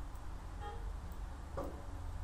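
Quiet room tone with a steady low hum, broken by a faint short tone a little under a second in and a brief soft sound near the end.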